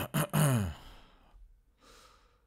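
A man sighs: a short voiced exhale, about half a second long, falling in pitch. It comes right after two quick clicks at the start. A soft breath follows near the end.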